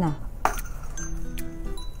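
Small metal decorative bells on a tinsel Christmas wreath clinking as the wreath is handled: one sharp clink about half a second in, then a few faint high pings, over background music.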